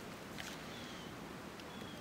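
Quiet outdoor background: a faint steady hiss with a few faint, brief, high chirps from birds.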